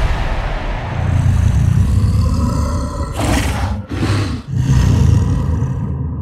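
A giant monster's roar used as a trailer sound effect, deep and rumbling. It grows harsher about three seconds in, breaks off briefly twice, then trails off.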